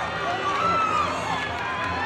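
Audience voices shouting and cheering, several people calling out at once.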